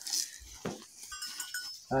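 Goats bleating faintly in a corral, with a soft thump under a second in.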